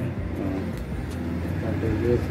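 A motor vehicle engine running with a steady low hum and some changes in pitch, with a few faint sharp snips of barber's scissors cutting hair.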